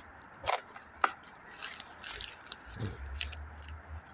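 Footsteps and handling noise from a phone carried while walking across wet gravel: scattered clicks and short scrapes, the sharpest about half a second and a second in, over an on-and-off low rumble on the microphone.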